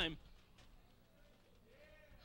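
Near silence with a faint, brief wavering cry of a human voice near the end.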